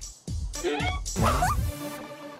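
Background music with a short, high, whining vocal cry that rises in pitch, most likely a cartoon character's frustrated whimper.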